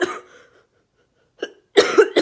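A young woman coughing into her fist: one harsh cough at the start, then a short cough and a stronger one near the end.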